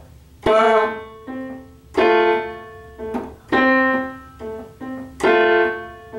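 Casio Privia digital piano playing a slow phrase with heavily exaggerated accents: four loud notes about a second and a half apart, each followed by a much softer one. The accented notes are deliberately overdone and the others played very soft, as an exercise for learning to accent.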